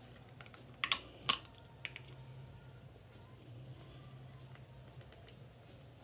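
Crab leg shell being cracked and snapped apart by hand. There are a few sharp cracks about a second in, the loudest just after, then a few fainter clicks.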